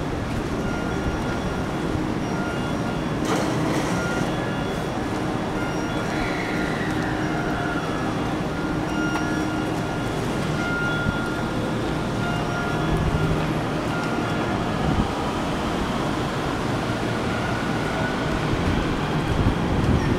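Steady rumble and hum of a busy train station, with a falling whine about six seconds in.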